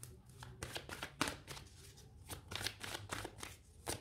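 Hands shuffling a deck of oracle cards: a quick, irregular series of papery card flicks and slaps.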